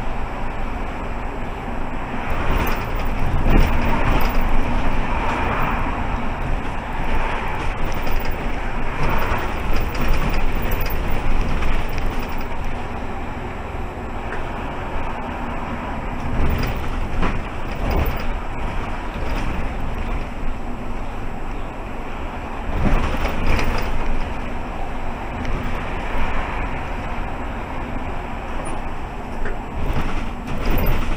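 Mercedes-Benz Citaro G articulated bus driving at about 35 km/h, heard from inside the driver's cab: steady engine and road noise, with occasional knocks and rattles.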